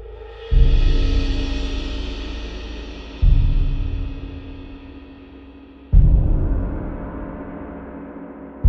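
Sampled orchestral percussion: three deep orchestral bass drum hits about two and a half seconds apart, each decaying slowly, over the long ringing wash of a tam-tam that gradually fades.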